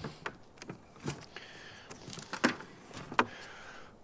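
Quiet handling noise of batteries and gear being moved about on a plastic kayak: five light knocks and clicks spread over the few seconds, with faint rustling between them.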